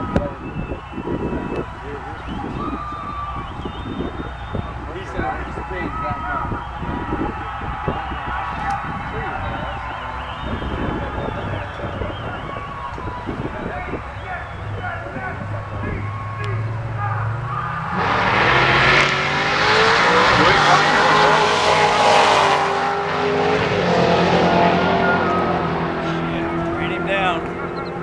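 Two Camaro drag cars run their engines in low, uneven rumbles at the starting line. About 18 seconds in they launch at full throttle, loudly, and the engine pitch climbs in steps through the gear changes as they run down the strip, then fades.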